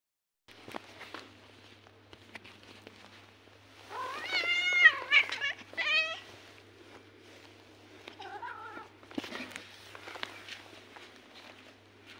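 Domestic cat meowing: a loud drawn-out meow about four seconds in, a second about six seconds in, and a fainter one a little after eight seconds, with scattered clicks and rustles between.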